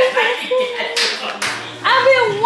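Excited wordless vocal exclamations, with a couple of sharp hand claps around the middle.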